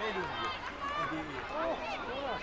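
Several people's voices talking and calling out over one another, with no single voice standing out.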